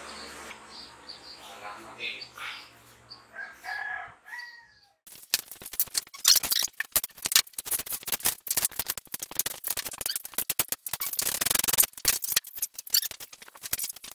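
Loud, rapid, irregular clicking and clattering of hand tools and the plastic housing of a portable generator as it is taken apart, starting about five seconds in.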